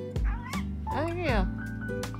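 Budgerigar uttering a short mimicked word, captioned 'もうえ', in two quick voiced calls. The second call glides up and then down in pitch about a second in. Background music with a steady beat plays under it.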